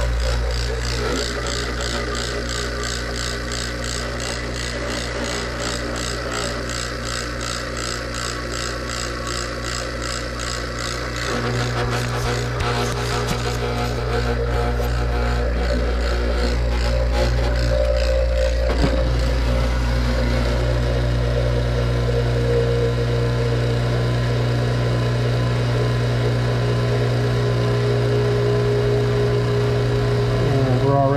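Electric HVAC vacuum pump running steadily, evacuating the air-conditioning line set and coil down toward a deep vacuum in microns. It is a continuous motor hum that grows somewhat louder from about midway.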